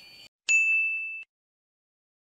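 A single high-pitched ding, an end-card sound effect, ringing steadily for under a second and then cut off suddenly.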